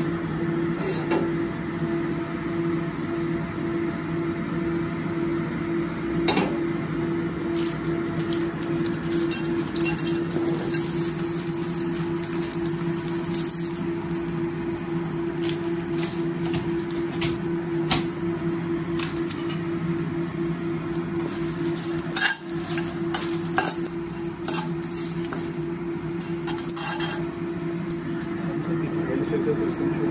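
Whole dry spices (dried chillies, bay leaves, star anise) frying in hot oil in a stainless steel wok, with scattered clicks and scrapes of a spatula stirring them against the metal over a steady kitchen hum.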